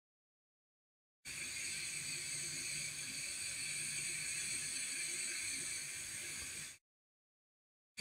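Hot air rework station's nozzle blowing a steady hiss onto a freshly placed Wi-Fi chip to melt its solder. The hiss starts about a second in and cuts off suddenly near the end.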